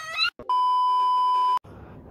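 A steady electronic beep: one high pure tone held for about a second, starting and stopping abruptly between moments of dead silence, like an edited-in censor bleep. A brief fragment of a girl's voice comes just before it.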